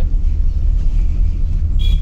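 Cabin noise inside a moving Maruti Suzuki Alto 800: a steady low rumble of engine and road.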